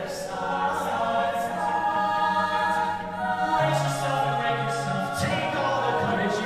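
Mixed a cappella group singing held chords in close harmony, with no clear words. A low bass note comes in about midway through.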